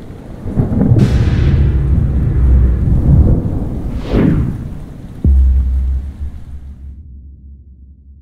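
Cinematic logo sound effect. A sudden whoosh about a second in sits over a deep rumble, and a second whoosh swells and falls near four seconds. A sharp low hit follows a little after five seconds, its low hum fading away near the end.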